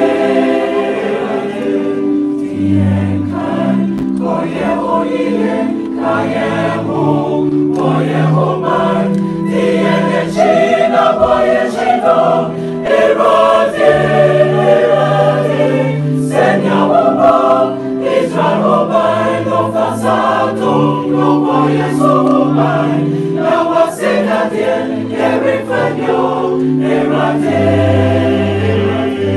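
A choir singing a gospel song, loud and continuous, with long held low notes under the voices.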